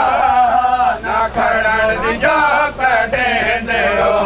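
A noha, the Shia lament, chanted live by male voice in a wavering melodic line, in phrases with short breaks between them.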